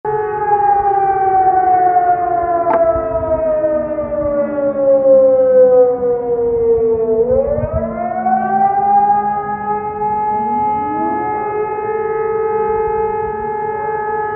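Civil-defence warning sirens mounted on apartment and public buildings sounding during a test of the public alarm system. The main siren's pitch falls slowly for about seven seconds, then rises again and holds steady. A second, lower-pitched siren follows the same fall and rise a little later.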